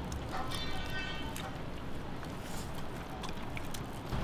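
Light clicks of metal chopsticks against plates and bowls over a low background hiss, with a brief faint high-pitched tone about half a second in.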